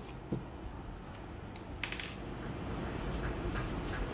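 A sticky note being handled on a table, with a small click about a third of a second in, then a felt-tip permanent marker scratching across the paper note as a word is written, growing louder in the last second or so.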